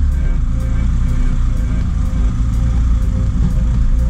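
A light truck's diesel engine running at low speed, heard from inside the cab as a steady low rumble.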